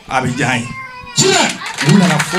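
A person's voice calling out with sweeping rises and falls in pitch, in words the recogniser could not catch. About a second in, a wide hiss of crowd noise comes up beneath it.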